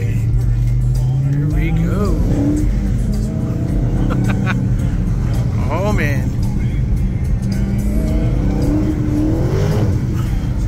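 Dodge Challenger engine heard from inside the cabin while the car drifts on a wet surface. It revs up and drops back twice, climbing about a second in and again near the end, with arching higher-pitched sounds over it.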